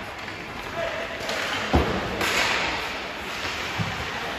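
Ice hockey play in an indoor rink: a loud sharp knock on the rink boards about two seconds in, a hiss of skates scraping the ice just after, and a lighter knock near the end, over voices in the arena.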